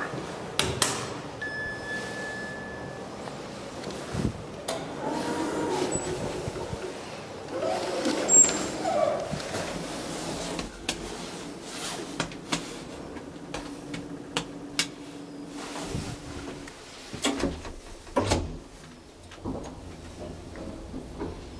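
Bauer elevator in use: a short held electronic beep early on, then doors opening and closing with clicks and knocks. A steady low motor hum follows while the car travels, and it ends in a cluster of sharp clicks as it stops.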